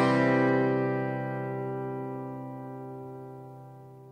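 The last chord of a song, with guitar, ringing out and fading steadily away to nothing.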